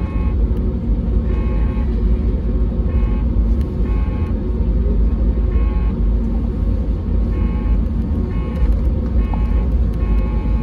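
Cabin noise of a Lufthansa Airbus A320neo taxiing: a steady low rumble from the wheels and its Pratt & Whitney geared-turbofan engines at idle thrust. A high engine tone cuts in and out every second or so.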